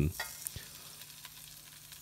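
Pre-boiled potato wedges sizzling quietly in hot olive oil in a frying pan, with a single light tap about half a second in as a wedge is set down in the pan.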